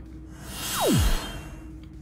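A whoosh transition sound effect: a swell of noise that builds to a peak about a second in and then fades, with a tone sweeping steeply down in pitch through it.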